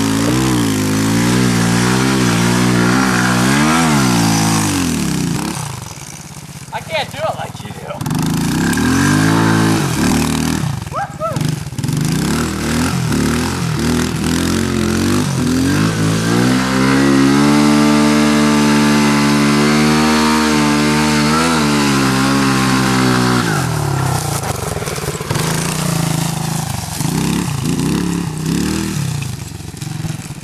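Small dirt bike engine revving up and down over and over, then held at high revs for several seconds in the middle. It drops off briefly about six seconds in, and runs lower and more unevenly near the end.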